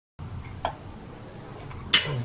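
Two short metallic clicks over faint background noise, a softer one a little over half a second in and a sharper one near the end, from hand work on the bolts of an engine motor mount as they are snugged in.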